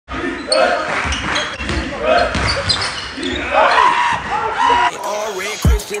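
Basketball dribbling on a sports-hall floor with players' voices echoing in the gym. About five seconds in, this gives way to a hip-hop track with heavy bass kicks, and rapping starts at the very end.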